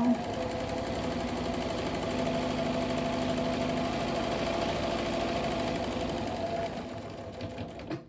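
Electric sewing machine stitching a paper-piecing seam through fabric and foundation paper at a steady, moderate pedal speed, the motor running with the needle's rapid strokes. It slows and stops near the end.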